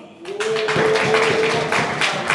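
An audience clapping in rhythm, about five claps a second. A single steady held tone sounds under the clapping for most of it, stopping shortly before the end.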